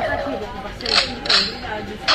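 A handheld novelty sound-effect box playing its gun effect through its small speaker: two short, tinny bangs about a second in, a third of a second apart.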